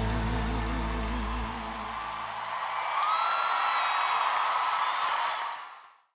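The song's final held note, voice and band with vibrato, ends about a second and a half in. Then an audience cheers and applauds, with a whistle about three seconds in, and the sound fades out near the end.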